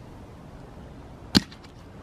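One sharp wooden knock about a second and a half in: a piece of scrap wood dropped into a plastic tote and landing on the wood pieces already inside.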